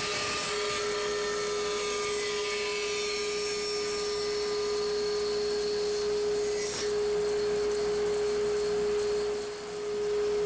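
Bandsaw running with a steady hum while its blade cuts through a small wooden block, the cutting hiss changing about seven seconds in. The sound dips briefly near the end.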